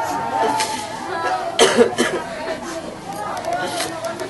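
Overlapping voices of grieving people, wordless crying and lamenting mixed with low talk, with a sharp cough or sob about a second and a half in.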